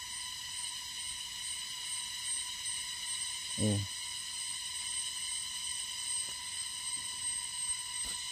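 A steady, high-pitched whine made of several tones stacked together, unchanging in pitch and level, with a man's brief "oh" about three and a half seconds in.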